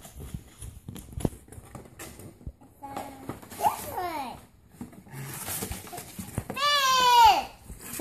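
Tissue paper and cardboard crinkling and rustling as a toddler digs into a shipping box, broken by a child's high-pitched vocal sounds: a short one midway and a louder falling squeal near the end.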